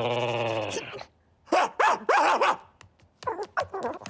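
Cartoon pug vocalising: a drawn-out wavering growl-like call, then three loud barks in quick succession, then a few shorter barks near the end.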